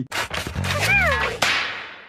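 Studio logo intro sound effects: a quick run of clicks, then a noisy rush with a wavering tone that glides up and down, and a sharp crack about one and a half seconds in that fades away slowly.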